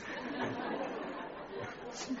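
A pause in speech filled with a steady background hiss and faint, indistinct murmur of voices.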